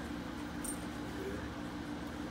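Steady mechanical hum of a window air-conditioning unit, with a short high squeak about two-thirds of a second in.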